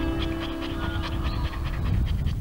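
A dog panting in quick, even breaths over guitar promo music, which stops near the end.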